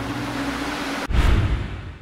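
Ocean surf sound effect: a steady rush of waves under a held low musical note. About a second in, a heavier wash swells up and fades away.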